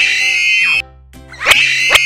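Cartoon sound effect played twice over children's background music: a loud, bright pitched sound that glides up and holds high. The first falls away after under a second; the second begins with a sharp click about a second and a half in.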